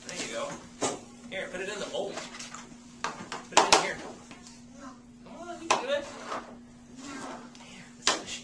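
About four sharp knocks of hands and plastic Play-Doh toys on a tabletop, the loudest just before halfway, over a steady low hum.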